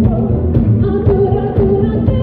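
Live pop band with a female lead singer, loud and heard from the audience: held sung notes over drums and bass guitar.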